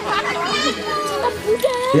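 Overlapping voices of children and adults in a close crowd, talking and calling out over one another.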